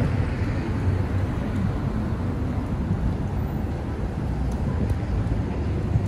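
City street traffic noise: a steady low rumble of cars and engines on a downtown road.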